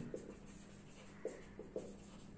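Marker pen writing on a whiteboard, faint, with a few short, sharper strokes in the second half.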